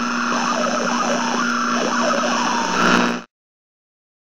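A siren-like sound with steady tones and wavering pitch, cutting off suddenly about three seconds in.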